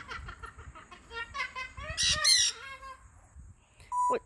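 Pet parrots calling: a run of short pitched calls, then a louder, harsh call about two seconds in.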